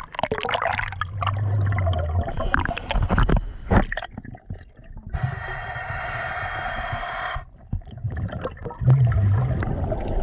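Scuba diver going under: splashing and churning water for the first few seconds, then underwater breathing through a regulator, with a steady hiss of about two seconds on an inhale and low bubbling rumble near the end.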